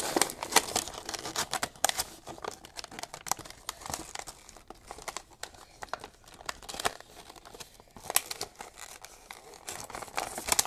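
A cardboard toy box with a clear plastic window being opened by hand: irregular crinkling, crackling and tearing of the packaging.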